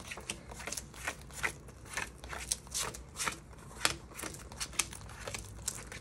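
A deck of gold-printed tarot cards being shuffled by hand: a steady run of quick, irregular card slides and snaps.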